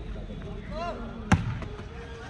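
A volleyball struck once by the server's hand, a single sharp slap about a second in, over the voices of a shouting crowd.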